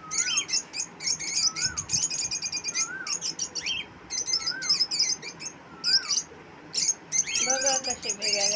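A flock of caged lovebirds chirping and twittering continuously, many birds at once, with a clearer rise-and-fall whistled note repeating about once a second.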